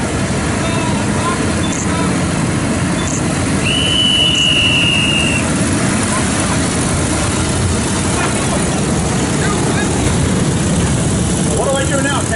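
Several vintage Harley-Davidson V-twin motorcycles running together at low speed in close formation, a steady engine rumble throughout. A single steady high-pitched tone sounds for about two seconds around four seconds in.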